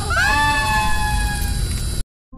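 A person's loud, long scream used as a meme sound effect. It holds a high pitch over a heavy noisy background and cuts off suddenly at the end.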